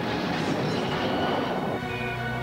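A loud, steady rushing roar of storm wind and rumble. Near the end it gives way to music with long held notes.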